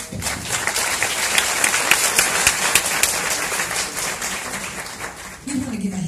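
Audience applauding, starting abruptly and thinning out after about five seconds.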